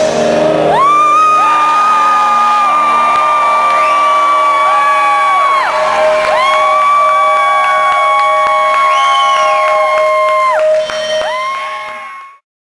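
Amplifier feedback ringing on after the band stops playing: two long, steady high howls of about four to five seconds each over a lower held tone, with crowd shouts underneath, fading near the end.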